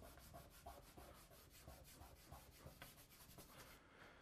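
Near silence with faint scratching and rubbing: writing being done by hand on a board.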